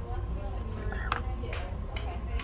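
Restaurant dining-room background: a murmur of distant voices over a steady low hum, with one sharp click a little after a second in.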